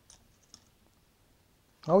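Two light clicks about half a second apart: a paintbrush tapping against the rim of a small glass jar of thinner as the brush is rinsed.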